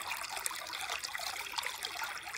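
Shallow stream trickling and splashing over rocks, a steady babble of running water.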